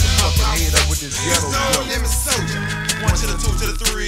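Hip hop track with rapping over deep, sustained bass notes.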